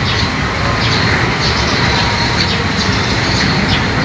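Steady loud noise, heaviest at the low end, with brief faint chirps over it.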